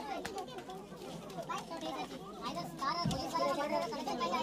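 Crowd of onlookers chattering, many voices at once with children's voices among them.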